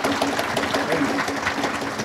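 Audience applauding: many hands clapping steadily and densely.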